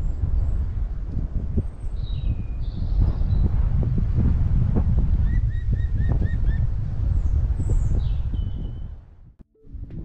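Wind buffeting the microphone in a steady low rumble, with birds calling over it: scattered chirps and a quick run of about five identical notes midway. The sound drops away about a second before the end.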